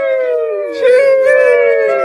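A long, drawn-out, high-pitched "sheeeesh" held by more than one voice at once, the pitch sliding slowly downward.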